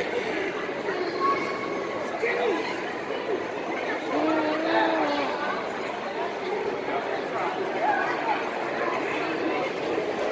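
Indistinct chatter of visitors' voices in a large exhibit hall, with one voice drawn out for about a second near the middle.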